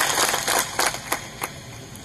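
Crowd noise fading out into a few scattered, sharp hand claps, about four of them over a second, in a pause between the speaker's phrases.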